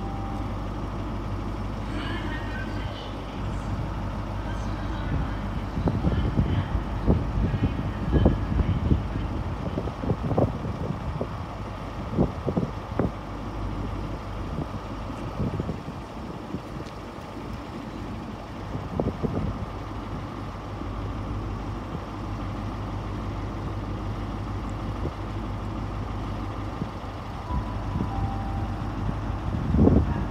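Class 43 HST power car's MTU diesel engine idling at the platform, a steady low hum. Wind buffets the microphone in gusts, hardest in the first half.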